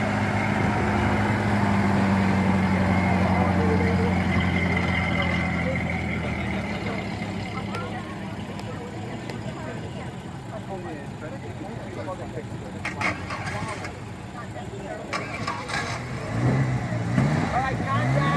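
1930 Ford Model A's four-cylinder engine running at a steady idle, fading out about six seconds in.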